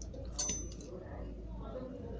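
A single light clink with a brief high ring about half a second in, as a small hand tool is handled on the repair bench, over a low steady hum.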